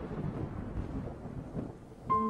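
A low rumbling noise with no tone or beat, easing off slightly near the end.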